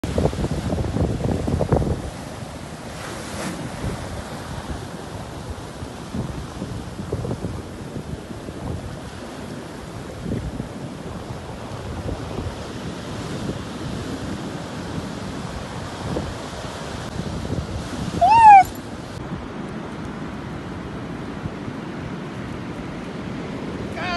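Storm surf from a strong swell breaking and washing in a continuous rush, with wind on the microphone; it is loudest in the first two seconds. About three-quarters of the way through, a single short high-pitched cry, rising and falling, rings out above the surf and is the loudest sound.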